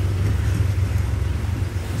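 Low, steady rumble of wind buffeting the phone's microphone, over a faint even hiss.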